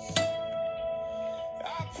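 Steel-string acoustic guitar: a chord strummed just after the start rings on. A voice starts singing the next line near the end.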